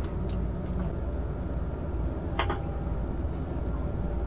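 Steady low room hum, with a faint click near the start and a sharper short click midway.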